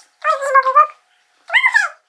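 Two short high-pitched vocal cries, the second rising and falling in pitch.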